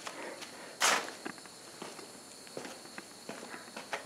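Soft footsteps and small handling noises, with one louder scuff about a second in, then faint scattered ticks.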